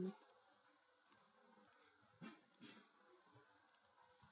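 Near silence with a few faint computer mouse clicks, the clearest two a little past the middle.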